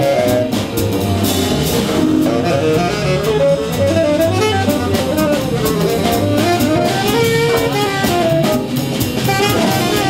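Jazz big band playing, with a tenor saxophone carrying a moving melodic line of quick stepping notes over drum kit and rhythm section.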